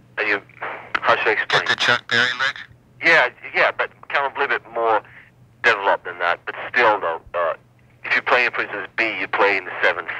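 Speech: one person talking almost without pause over a steady low hum, as on a taped interview.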